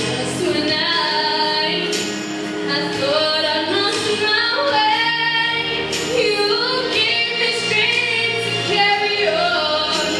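A woman singing a solo vocal melody into a handheld microphone, amplified, over steady instrumental accompaniment that holds sustained chords beneath her voice.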